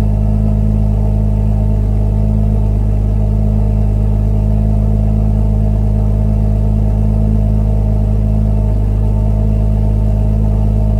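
BMW M140i's 3.0-litre turbocharged straight-six idling steadily, heard at its tailpipes, with no revs.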